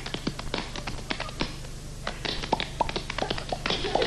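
Body percussion: a quick, rhythmic run of sharp slaps and taps made with the hands, some with a short pitched pop, with a brief pause before halfway.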